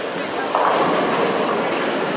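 Bowling ball crashing into the pins about half a second in, with the clatter of the pins lasting about a second, over the steady din of a busy bowling alley.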